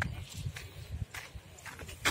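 Faint footsteps on a concrete path, sharp steps about twice a second over a low rumble.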